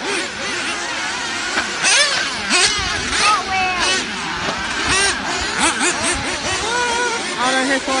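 Remote-control off-road racing buggies running on a dirt track, their high-pitched whine repeatedly rising and falling as they rev through the corners and jumps.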